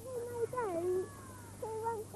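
Speech: a high voice drawing out long, gliding vowels in dialogue.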